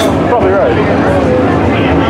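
Indistinct talking among nearby spectators over a steady low rumble of race-car engines.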